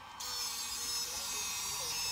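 DJI Inspire 2 drone switching on and raising its landing gear: a steady high-pitched electronic whine starts just after the beginning, with a faint wavering motor tone beneath it.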